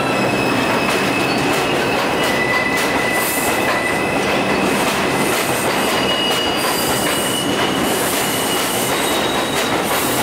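Bombardier R142 subway train running into an elevated station alongside the platform: a steady rumble of steel wheels on rail, with thin, high wheel squeals that come and go.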